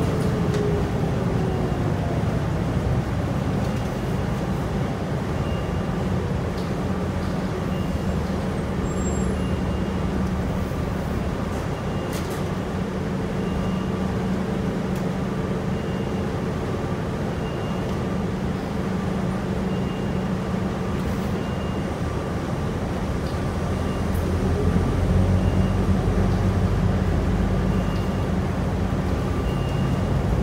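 Interior of a 2009 New Flyer DE40LF diesel-electric hybrid transit bus underway: steady drivetrain hum and road noise, getting louder in the last few seconds. A faint high beep repeats every second and a half or so throughout.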